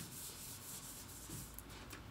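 Faint rubbing or rustling noise in a series of soft strokes that die away.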